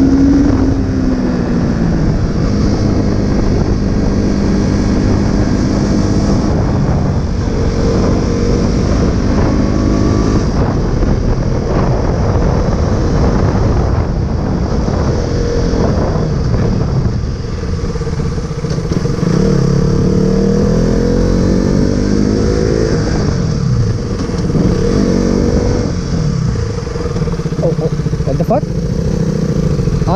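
Single-cylinder engine of a KTM RC sport bike heard from the rider's seat, pitch rising and falling as it accelerates, changes gear and eases off along the road.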